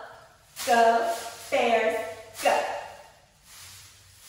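A woman shouting a cheerleading chant, three loud words about half a second, a second and a half and two and a half seconds in. The first and third begin with a sharp rustling clap of pom-poms.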